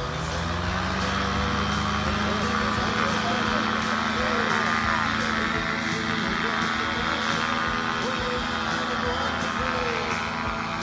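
Paramotor engine and propeller throttled up for takeoff: the drone rises in pitch at the start, then holds a steady high-power note as the pilot runs and lifts off. Music plays underneath.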